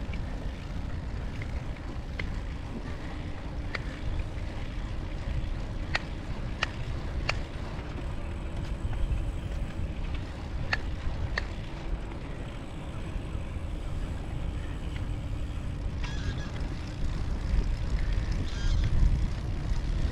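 Geese honking, short calls scattered through, over a steady low rumble of wind and tyres from a moving bicycle.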